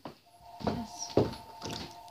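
Jiggly slime from a cut-open mesh stress ball being squeezed by hand: a few short wet squelches, the loudest a little over a second in. A faint steady two-pitch tone runs behind them.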